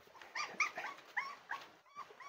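Young puppies whimpering: a series of short, high-pitched squeaks, several in quick succession.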